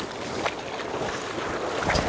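Wind on the microphone over small waves at the shoreline: a steady noisy wash, with a low wind rumble swelling near the end.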